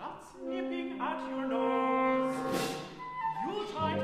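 Mixed chamber ensemble of woodwinds, brass and strings playing held notes in chords. Near the end one line rises in a slide, and low bass notes come in just before the end.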